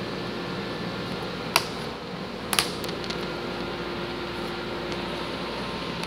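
Steady background hum with two light, sharp clicks about a second apart, the first about a second and a half in: laser-cut wooden tray pieces knocking together as they are handled and pressed into place.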